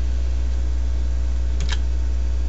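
A steady low hum on the recording, with a quick double click of a computer keyboard key about one and a half seconds in.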